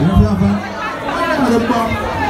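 Men's voices talking over a microphone amid crowd chatter, with a deep booming sweep in the bass about a quarter second in.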